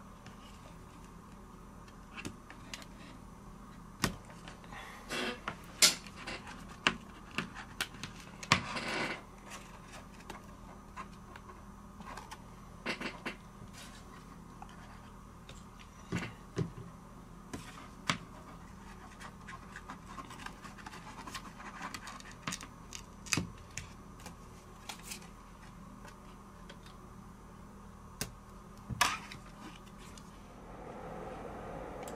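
Scattered clicks, taps and short scrapes of plastic opening cards working under the glass back cover of a Samsung Galaxy S6 to pry it off. A faint steady hum lies underneath.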